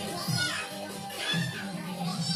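Children's high-pitched voices and chatter over background music.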